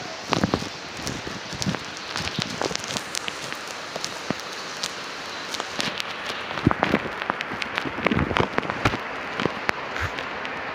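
Steady rain hiss with many scattered sharp taps of falling drops.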